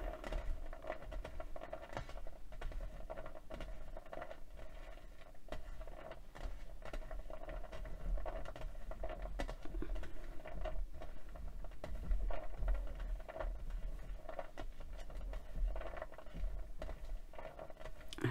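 Small pieces of polymer clay being stirred and tossed by fingertips on a glass work mat, giving many faint, irregular clicks and taps as the alcohol ink is mixed through them. A steady low hum runs underneath.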